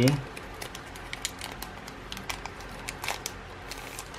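Foil wrapper of a Magic: The Gathering booster pack crinkling as it is pulled open and the cards are slid out, a run of scattered small crackles and clicks.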